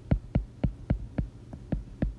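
A stylus tip tapping on a tablet's glass screen while a word is handwritten: about seven short clicks, roughly four a second, over a faint steady low hum.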